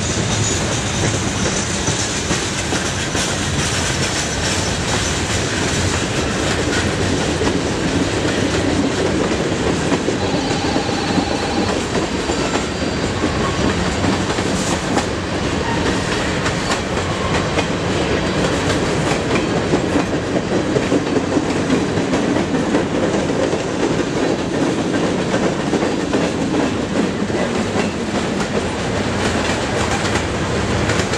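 Freight cars (boxcars, tank cars and covered hoppers) rolling past at low speed, with the steady rumble of the train and wheels clicking over the rail joints. A brief squeal comes about ten seconds in.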